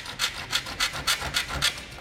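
Magic Saw hand saw cutting through plastic, wood and aluminum taped together in one pass: quick back-and-forth rasping strokes, about five a second.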